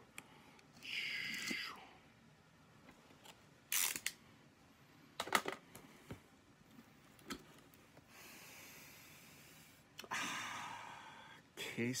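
Utility knife slicing through packing tape on a cardboard box: short rasping cuts about a second in and again from about 8 s to 11.5 s, with a few sharp clicks and knocks of the cardboard being handled in between.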